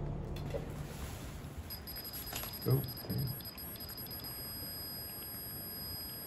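REM pod paranormal detector alarm going off: a steady, high-pitched electronic tone that starts about two seconds in and keeps sounding.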